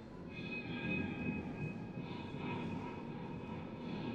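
Amplified Disarm violin, an instrument built from decommissioned firearm parts, played as a dense rumbling drone with a few steady high tones ringing above it.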